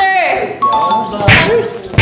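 Edited-in ding-dong chime sound effect, two steady notes held briefly about half a second in, over background music, with voices.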